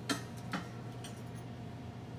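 Two sharp computer-mouse clicks about half a second apart, the first louder, over a steady low electrical hum.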